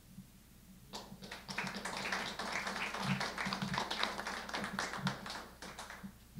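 Audience applauding, starting about a second in and dying away near the end, after the last line of a poem read aloud.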